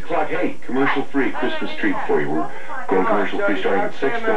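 Continuous talking that the recogniser could not make out: voices speak without a break.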